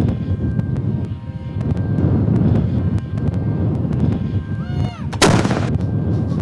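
Cannon fire: a steady low rumble of artillery, with one sharp, loud report about five seconds in.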